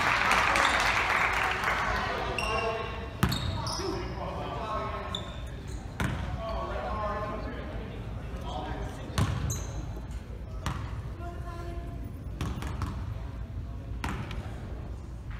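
A basketball bouncing on a hardwood gym floor a few times, single echoing bounces a few seconds apart, among spectators' voices that are loudest at the start and then die down.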